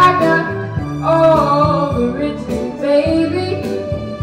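Female vocalist singing sustained, wavering notes over a recorded backing track with bass and drums.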